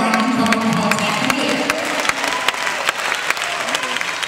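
Church congregation clapping in scattered, irregular claps during a pause in the sermon, with music playing underneath.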